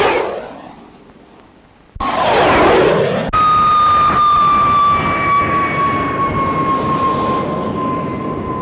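Jet aircraft noise. A jet passing with a falling whine fades out over the first two seconds, and a second pass with a falling whine cuts in. About a third of the way in, a de Havilland Vampire's Goblin turbojet takes over with a steady high whine over a roar, sinking slowly in pitch as the jet rolls along the runway.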